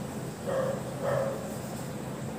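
Whiteboard marker squeaking on the board as letters are written, in two short pitched squeaks.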